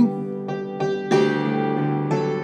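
Master Works DulciForte hammered dulcimer, its steel strings struck with wooden hammers: three chord notes struck about a third of a second apart, the last the loudest, then left to ring out with a long sustain. This is a D chord in a G–C–D–G chord progression.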